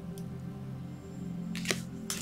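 Soft, steady background music of held tones, with one brief click near the end as a tarot card is handled and moved.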